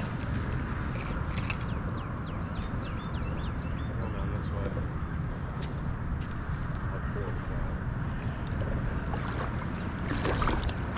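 River water sloshing around wading legs over a steady low rumble, with a bird calling a quick run of short falling notes during the first half.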